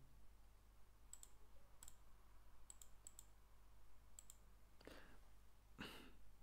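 Near silence with faint computer mouse clicks, mostly in quick pairs, four or five times in the first half, then two soft rustles near the end.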